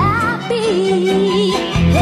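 A female singer in a Malay-language pop ballad, with band accompaniment. A short vocal run slides up near the start, then she holds one long note with a slight waver over a steady bass line.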